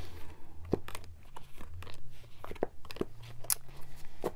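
Tarot cards being picked up and gathered into a deck by hand: irregular light clicks and rustles of card against card.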